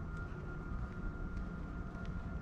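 Footsteps on concrete paving, about two a second, over a low steady rumble and a thin steady high hum.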